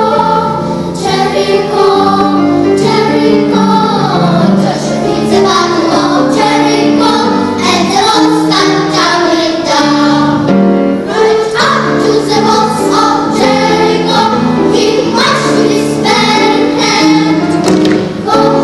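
Children's choir singing a jazz song, many young voices together moving from note to note.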